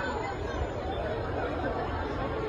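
Indistinct chatter of several people talking at once over a steady noisy background, with no single voice standing out.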